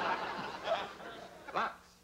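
Audience laughing at a sitcom joke, dying away during the first second, with a couple of short vocal sounds after.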